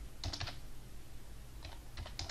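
Typing on a computer keyboard: a short run of keystrokes about a quarter second in and another run near the end.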